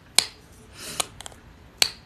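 About four sharp, dry clicks close to the microphone: one about a fifth of a second in, one at the midpoint after a short rushing swell, two small ones just after, and a loud one near the end.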